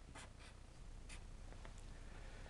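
Marker pen drawing on paper: a handful of faint, short scratchy strokes.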